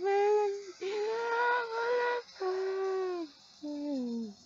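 A young woman singing alone with no backing, holding four long sung notes with short breaths between them. The last note steps down in pitch.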